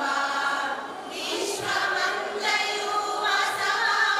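A women's choir singing together in long held notes, with a short break in the phrase about a second in.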